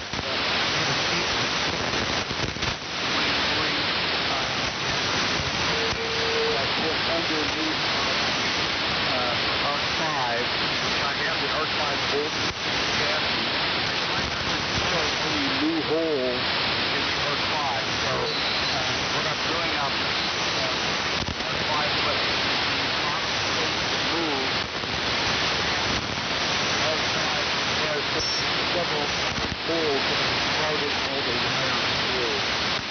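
Steady shortwave receiver hiss and static on a 75-meter AM frequency, with a weak, unintelligible voice fading in and out under the noise: the sound of a band in poor condition.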